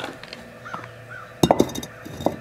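A loud cluster of sharp knocks and clatter about one and a half seconds in, from a small concrete block being handled and set down on a ledge. Before it there are two faint short chirps.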